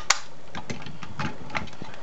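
A few light clicks and taps from hands handling the model car over a steady background hiss.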